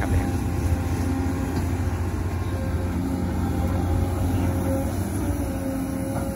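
XCMG XE215C hydraulic excavator's diesel engine running steadily while the machine swings and digs with its arm and bucket.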